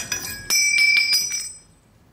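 A small metal bolt dropped onto a ceramic tile floor, clattering with a few quick bounces and a high metallic ring that dies away within about a second.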